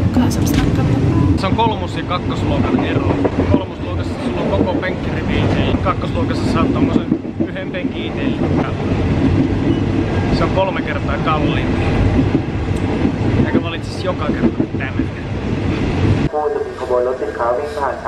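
Passenger train carriage running noise: a steady, dense rumble and rattle heard from inside the car. About two seconds before the end it cuts off abruptly and a voice takes over.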